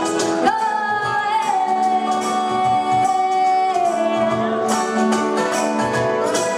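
Live band: a woman sings one long held note from about half a second in, sliding down near four seconds, over guitar, lap steel guitar and a regular beat on a cajon.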